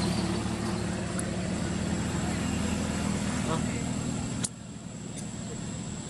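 A motor vehicle's engine running steadily close by. The sound drops suddenly about four and a half seconds in, leaving a quieter background.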